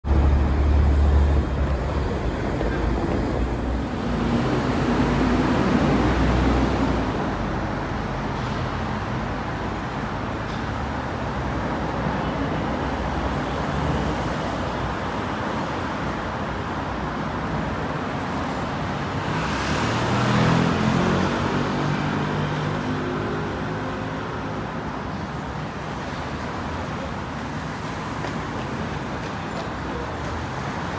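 Steady traffic noise from a busy city road, with cars and buses going by. It is loudest in the first few seconds.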